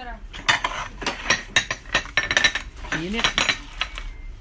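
Porcelain dishes clinking and knocking against each other and the table as they are handled and set down by hand, in a run of quick irregular chinks.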